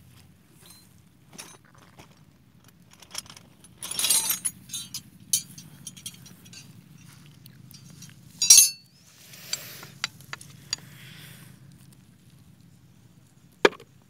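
Steel T-handle socket wrenches clinking and clattering against each other and on the bolts of a mud-caked hand-tractor gearbox casing being taken apart. Scattered light clinks are broken by two louder clattering bursts, about four seconds in and again about eight and a half seconds in, over a faint steady low hum.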